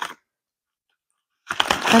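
Scissors cutting into a plastic mailer bag: one brief snip at the start, then a burst of crinkly cutting about a second and a half in.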